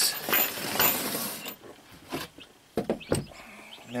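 Handling noise as a wooden handrail section and tools are moved on a plywood floor: about a second and a half of rustling and scraping, then three sharp knocks and clicks.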